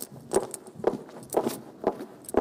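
A dance routine's soundtrack beat: sharp percussive clicks at a steady two a second.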